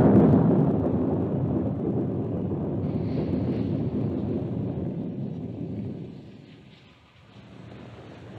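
A long roll of thunder, loudest at first, rumbling on and fading away about seven seconds in.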